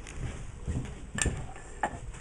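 A few light knocks and clacks as wooden hive parts are handled, the loudest a little over a second in.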